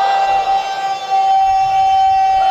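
A man's voice holding one long, high chanted note at a steady pitch through a microphone, as a zakir sustains a line of his majlis recitation.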